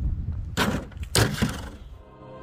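Knife blade hitting plastic gallon milk jugs: two sharp cracks of plastic about half a second apart, a slash and then a stab, the second the loudest. Wind rumbles on the microphone.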